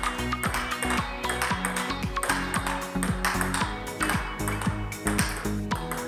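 Electronic background music with a deep, regular beat, over the quick clicks of a plastic table tennis ball hit back and forth with bats and bouncing on the table in a steady counter-hitting rally.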